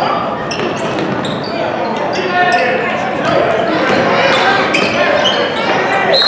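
Basketball bouncing and sneakers squeaking on a hardwood gym floor, with repeated sharp bounces and several brief high squeaks over a constant murmur of crowd voices echoing in the gym.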